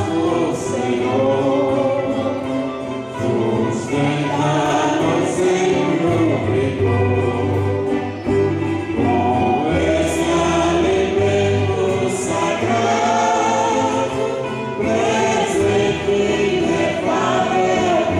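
A choir singing a hymn with a steady low instrumental accompaniment, continuous throughout.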